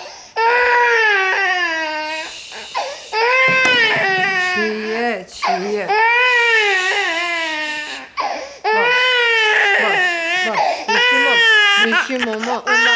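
A baby crying hard: a run of loud, high-pitched cries, each lasting a second or two, with short catches of breath between them.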